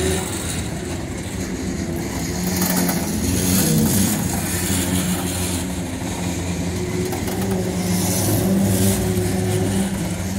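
Freight train boxcars rolling past close by: a steady rumble of steel wheels on rail, with a low hum that swells and fades.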